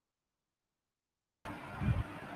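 Dead digital silence from a muted call line, then about one and a half seconds in a participant's microphone opens with a hiss of background noise and a low thump just before the end.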